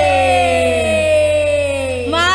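Live band's amplified music: one long held note sliding slowly down in pitch, over a steady low hum.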